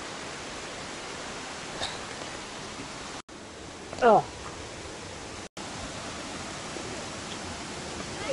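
Steady rushing of a rocky jungle river, a constant even hiss. It is broken twice by split-second drop-outs.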